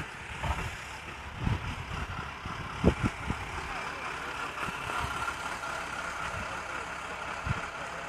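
A vehicle engine running steadily beside a road, with a few short knocks in the first half, the sharpest about three seconds in.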